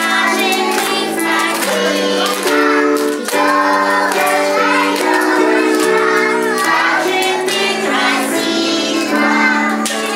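A children's New Year song: children's voices singing over steady held chords of backing music.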